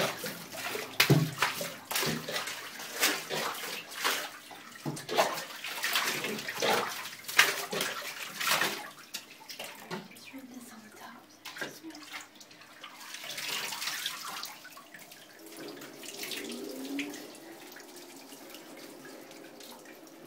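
Water splashing and sloshing in a bathtub as a dog is washed by hand, with frequent irregular splashes over roughly the first nine seconds, then a softer, longer wash of water about thirteen seconds in.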